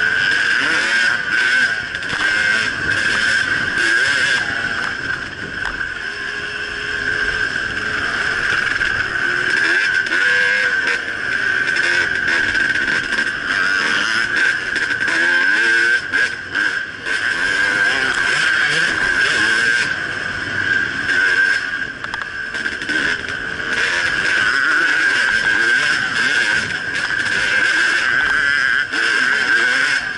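2010 Husqvarna WR300 two-stroke dirt bike engine running hard along a dirt trail, its revs rising and falling through gears and corners.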